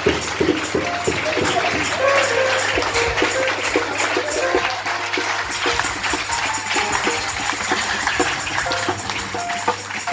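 Live church band music with a drum kit and keyboard playing a busy, steady beat, with hands clapping along.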